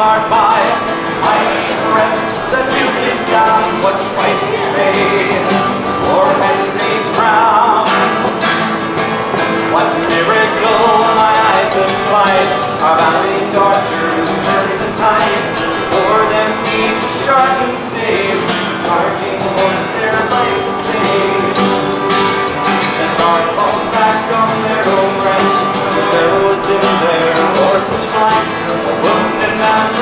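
Acoustic guitar strummed in an instrumental passage of a folk ballad, played live without a pause.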